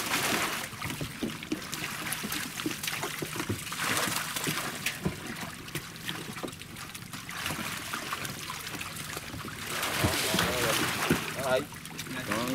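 Water splashing and sloshing as a dense mass of fish thrashing in shallow water inside a net enclosure, with a dip net scooping through them. Louder bursts of splashing come and go, with many small splats and flicks throughout.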